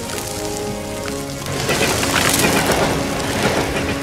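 A wood bonfire crackling loudly over soft background music; the crackle swells up about one and a half seconds in and lasts about two seconds.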